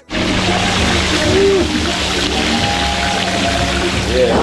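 Whole fish deep-frying in a large pan of hot oil: a loud, steady sizzle, with a low steady hum underneath.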